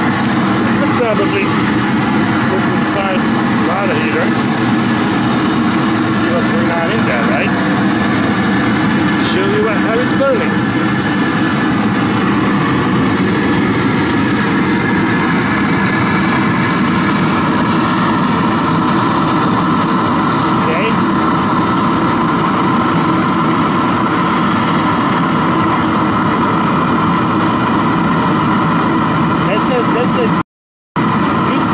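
Waste-oil burner firing on vegetable oil into a converted gas water heater's burner chamber: a steady, even rushing noise with a constant hum, unchanging throughout, the oil flow set for a stable flame.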